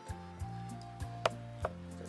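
Background music of slow, held notes, with a few sharp knocks or taps over it.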